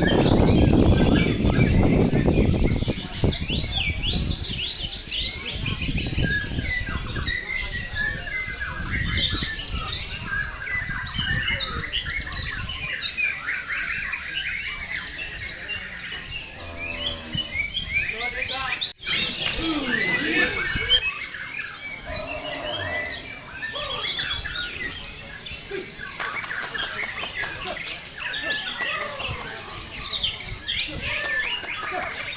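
Several white-rumped shamas (murai batu) singing at once: dense, overlapping runs of rapid whistles and chirps, with a low rumble of crowd voices under the first third and a brief break in the sound about two-thirds through.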